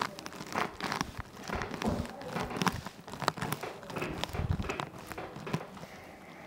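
Clothing and a treatment-table cover rustling, with scattered small clicks and creaks, as hands press and shift over a patient's back.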